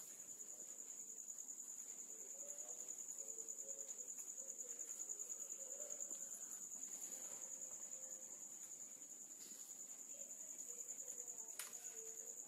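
Faint, steady, high-pitched pulsing trill of insects chirping, such as crickets.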